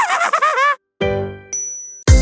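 Short intro jingle: a brief phrase with sliding pitch, then after a short gap a bright chime that rings out and slowly fades.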